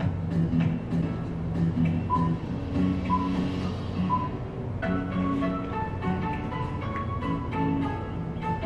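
Instrumental background music: sustained low notes with a high note repeating about once a second, then a stepping higher melody coming in about five seconds in.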